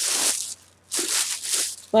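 Rustling handling noise from hands and the vinyl reborn doll moving against or close to the microphone, in two bursts: one at the start and a longer one about a second in.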